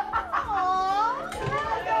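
A woman's high-pitched, laughing exclamation of surprise, her voice swooping down and back up.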